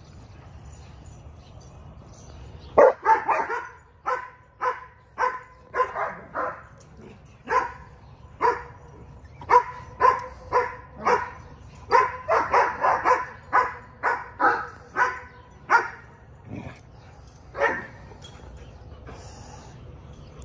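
Dog barking in short, repeated barks, sometimes single and sometimes in quick runs of several a second. The barking starts about three seconds in and stops a couple of seconds before the end.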